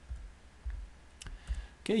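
A few light clicks at a computer, a little past one second in and again near the end, with some low, dull bumps.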